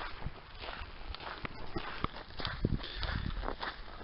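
Footsteps on a gravel road, coming as irregular short steps.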